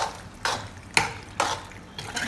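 Steel spoon stirring pasta and cheese in an aluminium pan: four short, wet scraping strokes about half a second apart.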